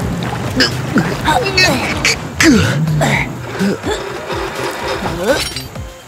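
Cartoon characters' wordless vocal sounds, short exclamations with gliding pitch, over background music.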